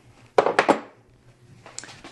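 Metal hand tools clinking together on a workbench as a long Allen wrench is picked up. A quick cluster of clinks comes about half a second in, and a faint click near the end.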